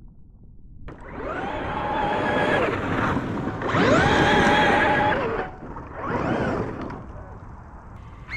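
Traxxas X-Maxx RC monster truck's brushless electric motor and drivetrain whining in three throttle bursts. The pitch climbs at the start of each burst and then holds; the first starts about a second in, the second is the loudest, and the third is short.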